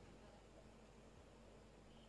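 Near silence: faint background noise with a steady low hum.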